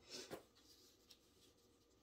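Near silence, with a brief soft rustle near the start as hands stretch the sleeve of a crocheted cotton top on a foam blocking mat.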